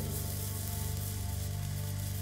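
Low, sustained dramatic music with the steady hiss of a lit fuse sizzling as it burns.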